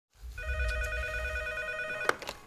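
A sustained electronic ringing tone, several pitches held together with a fast warble, starting about a third of a second in, over a low rumble.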